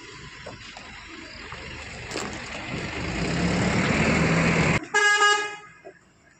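A road vehicle draws near, its engine and tyre noise growing louder over a few seconds, then its horn gives one short honk near the end.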